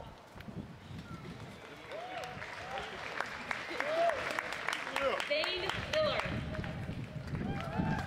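Crowd applauding, with scattered cheers and voices among the clapping. The clapping is quiet at first and swells about two seconds in.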